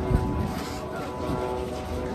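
A steady motor hum under the voices of a crowd, with a short thump just after the start.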